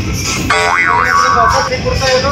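A cartoon 'boing' sound effect: a wobbling tone that starts about half a second in and lasts about a second, over background music.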